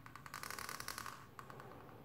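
Black marker pen's tip scratching across paper as it draws a long curved line: a grainy rasp lasting about a second, then a brief second stroke.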